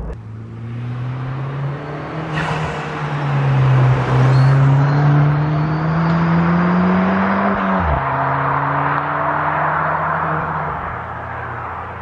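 Ford Fiesta ST hot hatch driving past under power: its engine note climbs steadily as it comes closer and gets louder. It drops sharply as the car passes about eight seconds in, then holds a lower note as it moves away.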